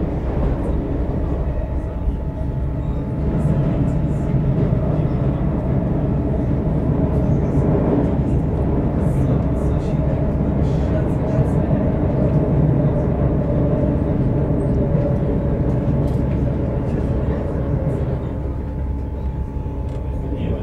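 Commuter train running at speed, heard from inside the carriage: a steady rumble of wheels on track with an electric motor hum.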